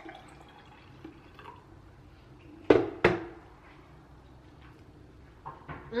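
Juice pouring from a plastic juicer pitcher into a drinking glass, with two sharp knocks about a third of a second apart about halfway through, the loudest sounds.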